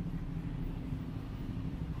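Steady low rumble of city street ambience, mainly the hum of road traffic, with no distinct events standing out.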